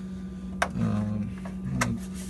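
Two sharp clicks as a plastic gallon jug is handled on a refrigerator's glass shelf, over a steady low hum.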